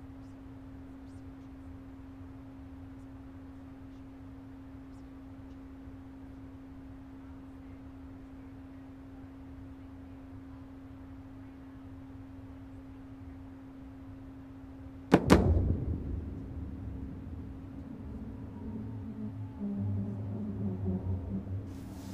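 A steady low hum, then about fifteen seconds in a sudden loud crack as the New Shepard booster's BE-3 engine reignites for landing, going on as a rough rumble that swells and fades.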